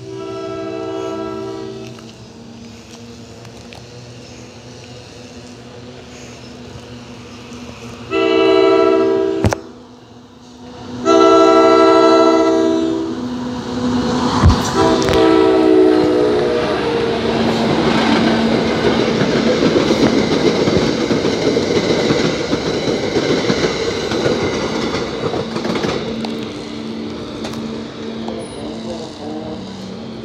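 NJ Transit locomotive's multi-chime horn sounding four blasts for the grade crossing, the two in the middle long and loud, followed by the train passing close by with a heavy rumble and the clatter of wheels on the rails that fades toward the end.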